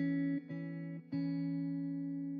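Background music: a guitar picking single notes and chords, with a new note struck about half a second in and another about a second in, each left to ring.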